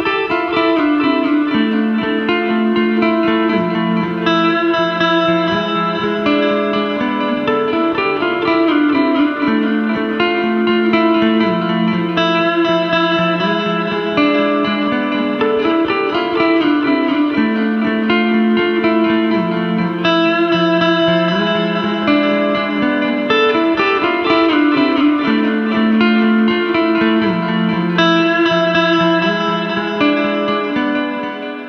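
Gibson Les Paul electric guitar played clean through a Guitar Rig 6 preset with delay and reverb, a post-rock style clean tone. Ringing, sustained chords move through a slow, repeating progression.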